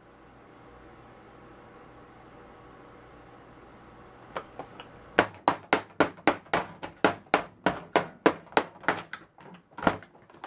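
A hammer striking a MacBook Pro laptop over and over, fast and loud, about three blows a second, beginning about five seconds in after a few light taps. Before the blows there is only a faint steady room hum.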